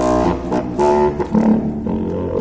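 Unaccompanied contrabassoon coming in suddenly and loudly after a soft passage, playing a quick run of low notes.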